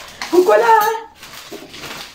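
A woman's voice says one word, then a faint clatter of kitchen dishes and utensils as she handles things at the counter and stove.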